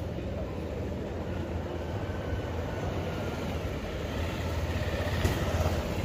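Motor vehicle engines running close by on a street, a low steady rumble that grows louder near the end as a scooter pulls up.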